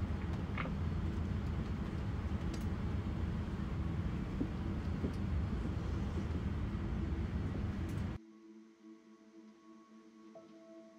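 Steady rumbling cabin noise in a Boeing 787 Dreamliner's cockpit as the airliner taxis onto the runway. It cuts off abruptly about eight seconds in, leaving a faint hum with a few steady held tones.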